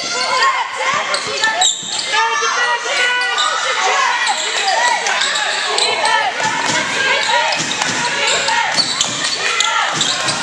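Live basketball game in a gymnasium: a basketball bouncing on the hardwood court amid players' calls and spectators' voices, echoing in the large hall.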